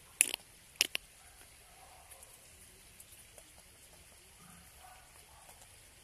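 Two short, sharp clicks about half a second apart in the first second, then only faint background.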